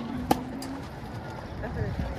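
Faint voices over low outdoor street noise, with a single sharp click about a third of a second in.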